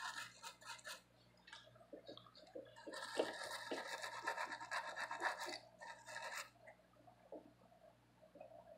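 Small brush wet with alcohol scrubbing dried thermal paste off a desktop CPU in quick, short, faint scratchy strokes. A brief spell of scrubbing comes at the start, and a longer one from about three seconds in to about six and a half.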